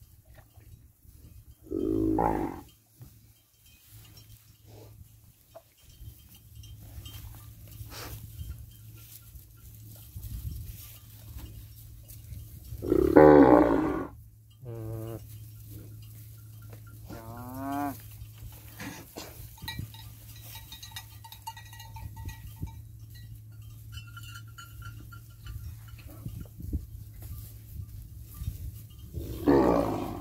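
Cattle mooing: a call about two seconds in, a long loud moo around thirteen seconds, a shorter rising call a few seconds later, and another moo near the end.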